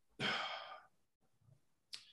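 A man's single audible breath, a sigh-like rush of air lasting under a second, followed by near silence and a small click near the end.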